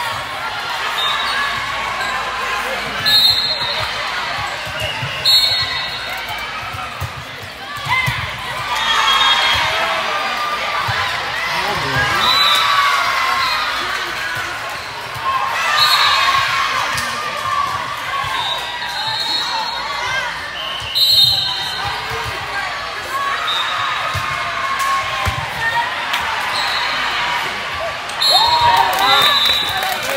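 Volleyball rallies in a large, echoing gym: the ball thuds on hits, over a steady din of crowd and player voices, with several short, high-pitched tones. The loudest moments come about two-thirds of the way through and near the end.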